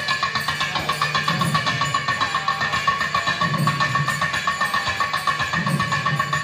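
Nadaswaram and thavil ensemble (periya melam) playing: the long double-reed nadaswarams hold a sustained melodic line over a low steady drone, with fast, dense thavil drum strokes throughout.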